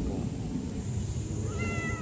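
An orange tabby cat meows once near the end, a drawn-out call held at a steady pitch.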